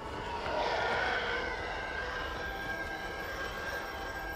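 A steady rushing drone, a trailer-style sound bed, that swells slightly about a second in, with a thin high tone held over it.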